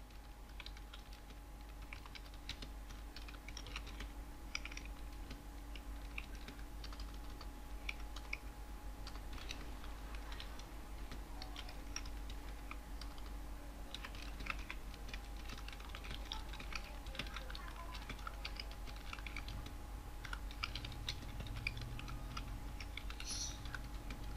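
Computer keyboard typing: quick runs of keystrokes broken by short pauses, over a faint steady hum.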